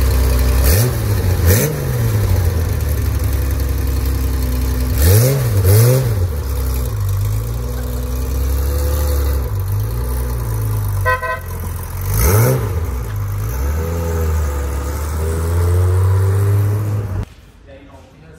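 Air-cooled Porsche 911 flat-six engine being blipped, about five sharp rises and falls in revs between stretches of steady low-speed running as the car pulls away and drives off. The engine sound cuts off suddenly near the end.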